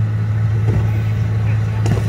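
A fire engine's engine running steadily with a loud, even low hum.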